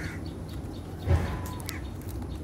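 Domestic geese honking in the background while banana leaves are rustled and unwrapped by hand, with a loud thump about halfway through.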